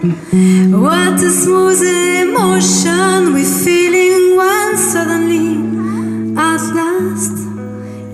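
Live music: a woman singing over electric guitar, with sustained bass notes underneath.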